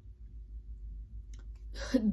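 A pause in a woman's speech, filled with a low steady hum and a few faint clicks. Her voice starts again near the end.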